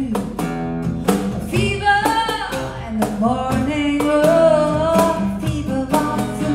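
Live acoustic band music: a woman singing over a strummed acoustic guitar, with cajon beats keeping time.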